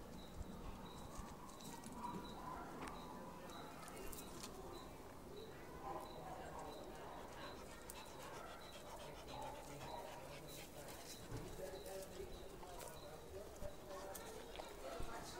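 Faint dog whining, with a high chirp repeating steadily about twice a second.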